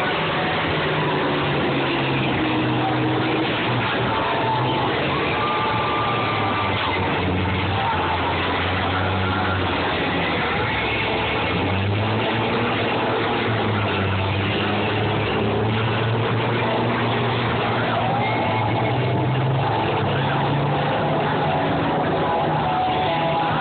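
Combine harvester engines running loud, revving up and down as the combines ram and push against each other in a demolition derby.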